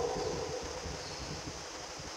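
A pause in speech: faint steady room noise in a reverberant hall, with the echo of the last spoken word dying away at the start.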